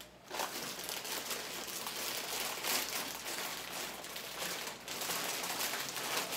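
Crinkly snack chip bags rustling and crackling as they are handled and emptied, with chips spilling out.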